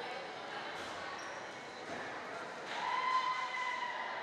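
Gymnasium din of voices and chatter with a ball bouncing. Near the end a steady held tone of about a second and a half rises above the rest.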